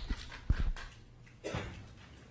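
Faint handling noise at the lectern microphone between speakers: a soft thump about half a second in and a brief rustle around a second and a half in, over quiet room noise.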